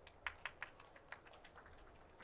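Faint clicks and taps of a laptop keyboard: a handful in quick succession in the first second or so, the sharpest about a quarter second in, then a few more spread out.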